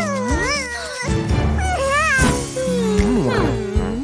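Cartoon cat voices meowing in several rising and falling calls, some wavering in pitch, over background music.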